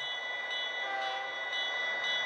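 Diesel locomotive air-horn sound effect from the Bachmann EZ App, played through an iPhone's speaker: one long held blast of several steady tones sounding together.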